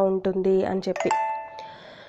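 A woman's voice speaks briefly, then about a second in a short electronic chime sounds: several steady tones ring together and fade out within a second.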